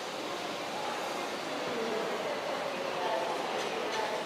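Ambience of a large indoor exhibit hall: a steady background hiss and hum with distant, indistinct visitor voices.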